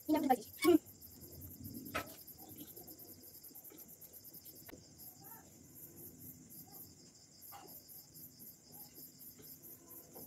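Crickets chirping steadily in a high, rapidly pulsing trill.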